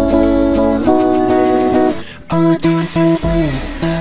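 Clean electric guitar playing held chords for about two seconds, then a short break and a run of single notes with a falling slide, over a steady low bass line.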